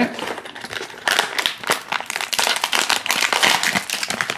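Foil blind-bag packet crinkling and crackling as it is handled and torn open by hand, many quick irregular crackles from about a second in.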